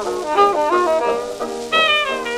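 Late-1920s hot jazz dance band playing on a dub of a 78 rpm record: horns carry a moving melody line over the band. The sound has the narrow, dull top of a recording of that era.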